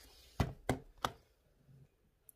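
Three sharp knocks about a third of a second apart, starting about half a second in: small objects being put down on a hard surface.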